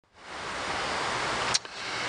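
Steady hiss of even, broad noise, broken by one short sharp sound about one and a half seconds in.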